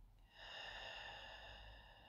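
A woman's slow, deep breath out, faint: a soft rush of air begins a moment in, with a thin, steady high whistle sounding over it, easing off in the second half.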